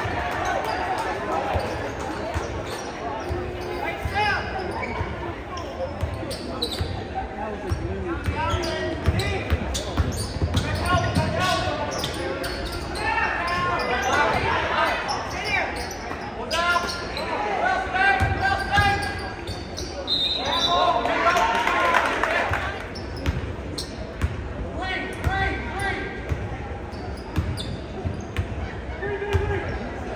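Basketball being dribbled on a hardwood gym floor during play, repeated bounces echoing in a large gym, over the voices of spectators talking and calling out.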